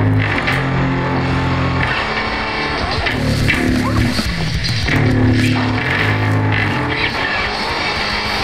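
Hard rock instrumental passage without vocals: guitar and bass guitar playing held low notes that change about every second, over a steady beat of sharp hits.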